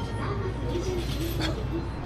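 Convenience store's background music playing over the shop's PA, with a couple of short noisy sounds in the middle.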